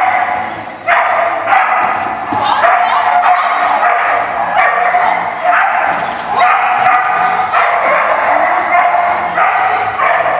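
A dog barking repeatedly in short yips, roughly once a second, with voices underneath.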